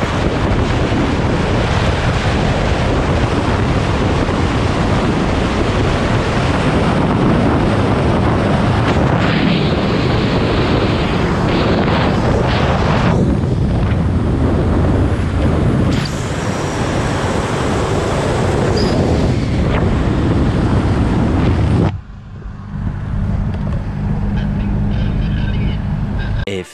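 Wind buffeting the microphone and road noise, from a camera held outside a 1979 Alfa Romeo Alfetta 2.0 at highway speed. About 22 seconds in the sound changes abruptly to inside the cabin, where the car's 2.0-litre four-cylinder engine drones steadily at cruise.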